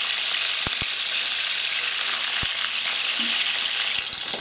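Salmon fillets frying in well-heated oil in a frying pan: a steady sizzle, with a few sharp pops in the first half.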